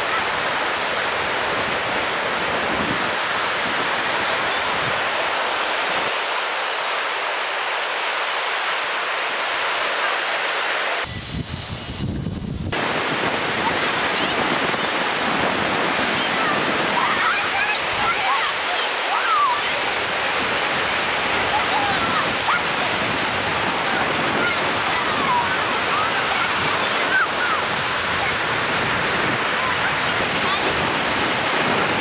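Ocean surf breaking on a beach: a steady rush of whitewater. Just before the middle it briefly turns lower and duller.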